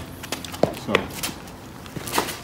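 A few footsteps on pavement, with a sharp tap a little over half a second in, as a person steps in for a chest bump. A single word is spoken just after the tap.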